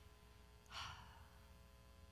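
A woman's short sigh, one breath out about two-thirds of a second in, picked up close by a headset microphone; otherwise near silence with a faint steady hum.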